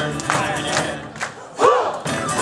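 Live folk-rock band playing, with drum strokes, acoustic guitar and bass. The music drops back briefly and a loud shout rings out near the end.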